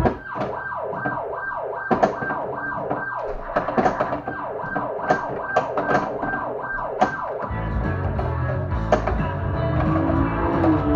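Getaway: High Speed II pinball machine playing a siren sound effect through its speakers while in multiball: rapid falling wails, about three a second, with a few sharp clacks of play on the playfield. The game music's deep beat drops out under the siren and comes back at the end.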